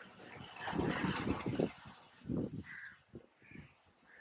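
Crows cawing a few times, with a louder rush of noise that swells about half a second in and fades before two seconds.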